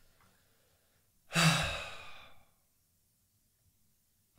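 A man lets out one heavy sigh about a second in, a breathy exhale that fades away over about a second.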